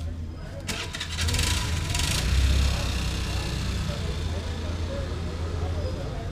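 Street ambience: a motor vehicle's engine starts with a rattling burst about a second in, peaks, then keeps running, with people talking in the background.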